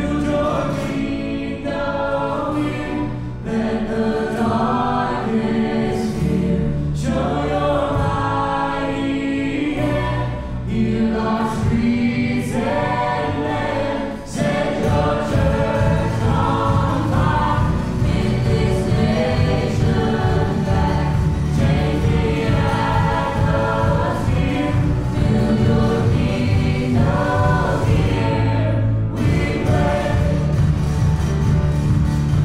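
Live worship band performing a song: male and female voices singing together over acoustic guitar, bass guitar, piano and drums. About halfway through the band fills out, with a steadier, busier drum beat.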